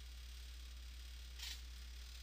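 Quiet room tone with a steady low hum, and one brief soft noise about one and a half seconds in.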